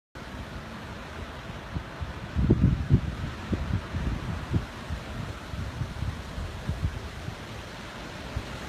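Wind buffeting a phone's microphone outdoors: irregular low rumbling gusts, strongest a few seconds in, over a steady hiss.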